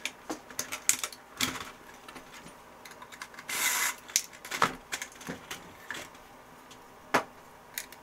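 Hard plastic and metal parts of an old word processor clicking, knocking and rattling as it is handled and pried apart, with one short rasping scrape about three and a half seconds in.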